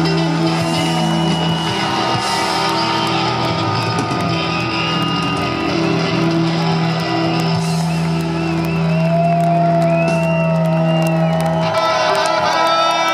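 A live rock band plays: electric guitars solo with bent, wavering notes over held low notes, which stop just before the end. One long guitar note is held through the last few seconds, with some crowd shouting.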